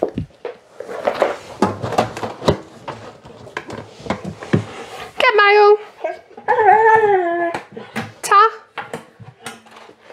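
A dog whining in three high whimpers: a short one about five seconds in, a longer one falling in pitch a second later, and a brief one near the end. Light knocks and clicks come earlier as it works the mailbox.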